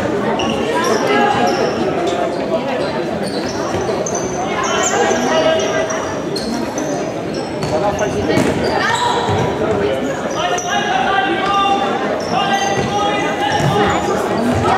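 Indoor football match in a sports hall: the ball being kicked and bouncing on the hall floor, mixed with players' and spectators' shouts echoing around the hall.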